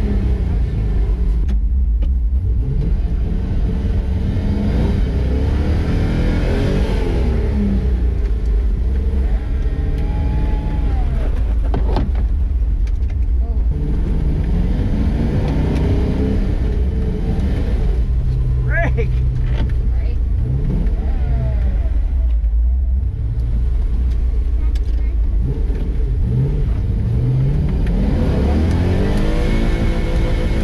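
An off-road truck's V8 engine revving up and dropping back again and again, over a steady low rumble.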